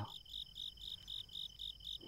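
Crickets chirping in a quick, even rhythm over a steady high trill, faint under the pause in the narration.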